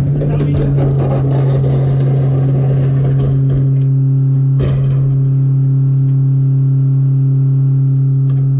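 Rear-loader garbage truck's engine and hydraulics running with a steady drone. Clattering of the emptied cart coming off the cart tipper fades in the first second or two, and a single knock comes about halfway through.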